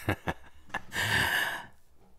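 A man's breathy laughter trailing off in a few short puffs of breath, then a longer breathy exhale about halfway through.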